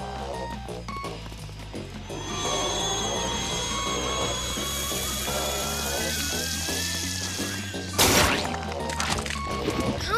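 Cartoon soundtrack: background music with a steady bass line. About two seconds in, a long hissing sound effect with thin whistling tones and a slowly rising whine joins it. It ends in a sudden loud crash about eight seconds in.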